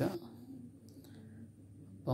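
A short pause between spoken phrases: the tail of a word at the start, then faint room tone with a faint click about a second in.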